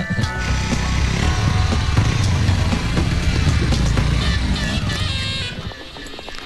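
A vehicle engine running with a steady low rumble, which drops away about five and a half seconds in, with music playing along.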